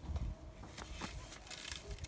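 Leaves and dry grass stems of a blackberry bramble rustling and crackling faintly as a hand reaches in to pick berries, a few small snaps over a low rumble.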